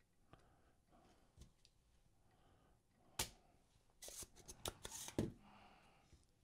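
Small hand tools being handled and set down on a workbench. The bench is quiet apart from a sharp click about three seconds in, then a quick run of small clicks and rattles about a second later.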